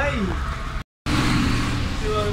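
City bus engine and road noise heard from inside the cabin: a steady low drone. It cuts out completely for a moment just before a second in.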